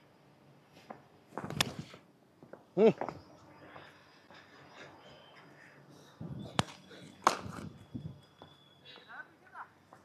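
A few scattered sharp knocks and taps from a cricket batter moving about and handling his bat between deliveries, picked up close on a body-worn mic, with a murmured "hmm" about three seconds in.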